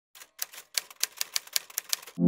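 Typewriter sound effect: a quick run of key strikes at about five a second, louder after the first half second.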